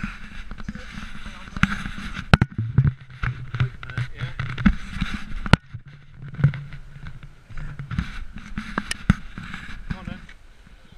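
Irregular knocks, scuffs and clicks of an action camera being carried and handled through a rough granite passage, over a steady rushing noise on the microphone.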